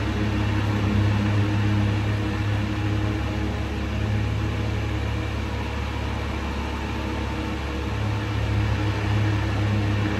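Two electric fans running close by, kind of loud: a steady low hum under an even rush of air.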